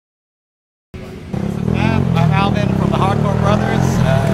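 After about a second of silence, an engine comes in idling steadily, a loud low hum under a man talking; from the biker gathering it is most likely a motorcycle idling.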